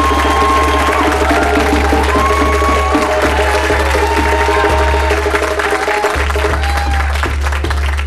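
Live band of electric guitar, bass and congas playing a short instrumental groove: held guitar notes over a steady bass line. Audience applause runs under it. The held notes drop away shortly before the end.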